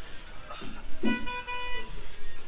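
A vehicle horn honking once, a steady single-pitched toot lasting just under a second, starting about halfway through.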